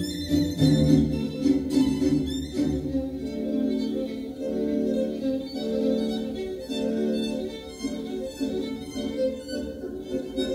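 Instrumental string music with long, swelling notes, played back through Elac Debut 2.0 B5.2 bookshelf speakers driven by a Sansui B2101/C2101 amplifier.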